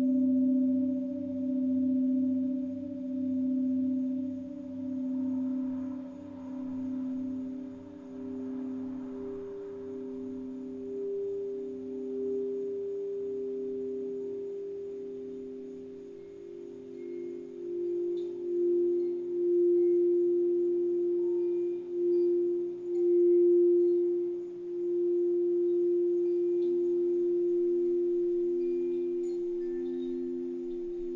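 Quartz crystal singing bowls ringing as several overlapping sustained tones, the lowest pulsing with a steady wobble about once a second. A higher bowl tone joins about a third of the way in and swells louder in the second half, with faint high chime tinkles over the top.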